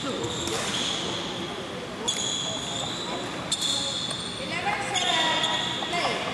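Badminton court sounds: sharp hits about every second and a half, each followed by a high squeal of court shoes on the floor, over spectators chatting in a reverberant sports hall.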